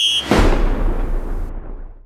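Logo-transition sound effect: a short bright chime, then a sudden fiery whoosh and boom with a low rumble that dies away over about a second and a half.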